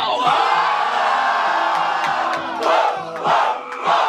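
Rap-battle crowd cheering and shouting in an outburst after a punchline lands, a sustained burst for about the first two and a half seconds, then shorter flare-ups near the end. The hip-hop beat keeps going underneath.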